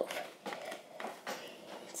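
A pencil stirring a glue and dish-soap slime mixture in a plastic container, making irregular small clicks and taps against the plastic.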